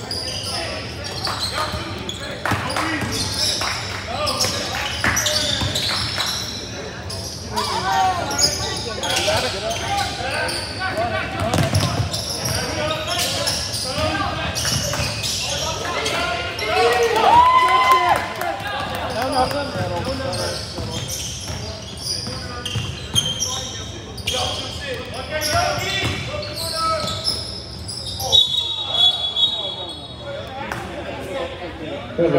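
Basketball game on a hardwood gym floor: the ball bouncing and dribbling, sneakers squeaking, and players and spectators calling out.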